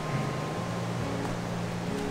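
Steady rushing of a river with white water, with a low steady hum underneath.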